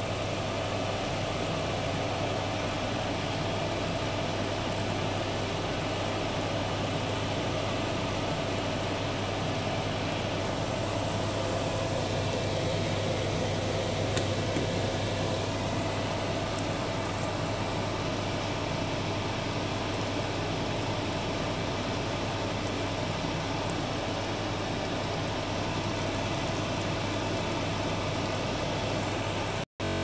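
Steady hum and even rushing noise of a kitchen extractor fan running over a pan on a gas hob. It stays unchanged throughout and cuts off abruptly just before the end.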